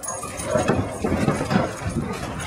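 A yellow Labrador's paws thudding in quick, irregular steps as she bolts off from a sit-stay to chase a thrown rock.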